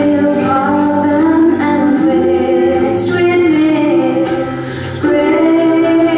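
A young woman singing a Christian worship song into a handheld microphone, holding long notes; her line dips briefly and a new phrase begins about five seconds in.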